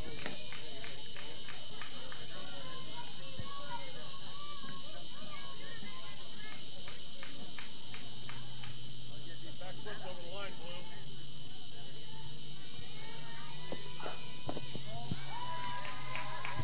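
Ambient sound of an outdoor ball field at dusk: a steady high-pitched insect chorus with faint, distant voices of players and spectators. A low steady hum joins about halfway through.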